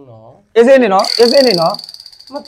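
A man speaks in short, animated phrases. About halfway through, a high, steady chirring tone comes in under the voice and holds on.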